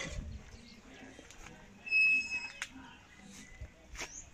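A single short, high whistled note about halfway through, followed by a sharp click, over faint outdoor background.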